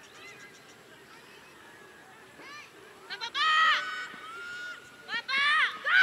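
Excited high-pitched shouting and screaming: several drawn-out yells, the loudest about three and a half seconds in and again near the end.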